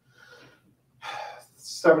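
A man's audible breaths as he pauses between phrases, a faint one early and a louder intake about a second in, with his speech starting again near the end. A faint steady low hum runs underneath.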